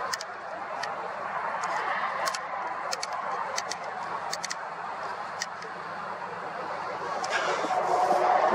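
Steady hum of distant road traffic, with a few light clicks scattered through it.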